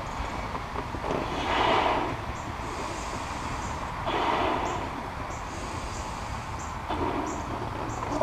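A rubber balloon being blown up by mouth: two long breaths pushed into it, the first about a second in and the second around four seconds in, each a rushing breathy sound.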